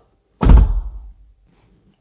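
Driver's door of a Mercedes-Benz V300 V-Class van pulled shut from the driver's seat, heard inside the cabin: one solid, deep thunk about half a second in, dying away within half a second.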